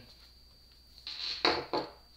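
Rustling, then a sharp knock about one and a half seconds in and a smaller one just after: a small hand tool being set down on a hard surface.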